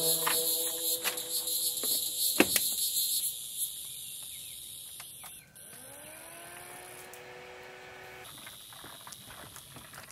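Steady, high-pitched insect buzzing. There is a sharp click about two and a half seconds in. About five and a half seconds in, a small fan starts: its hum rises in pitch and settles to a steady tone. This is the fan of a portable evaporative air cooler spinning up.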